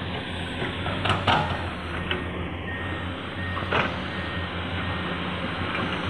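Heavy diesel earth-moving machinery running steadily with a low engine hum. Sharp knocks come about a second in and again near the middle, and a faint back-up alarm beeps for a couple of seconds in the second half.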